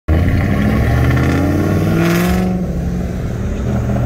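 Cabin sound of a BMW M3 Competition xDrive's twin-turbo inline-six, fitted with aftermarket downpipes and intakes, running under way with road noise. Its pitch climbs slightly, then changes about two and a half seconds in.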